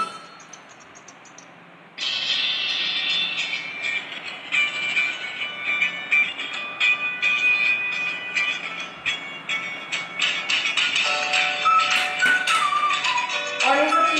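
Background music that starts about two seconds in, after a short quiet stretch, and carries a busy beat.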